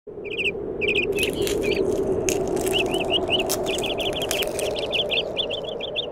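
Birds chirping: many short, quick high chirps, repeated throughout, over a steady low rushing background, with a few sharp clicks in the first half.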